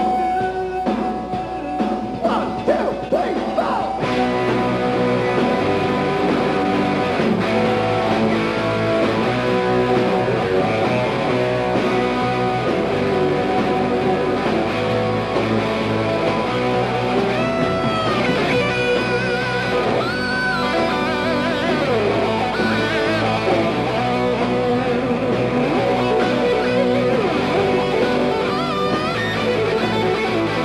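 Live hard rock band playing an instrumental passage with no vocals: electric guitar lead over drums, with the guitar bending notes and adding vibrato high up around the middle of the passage and again near the end.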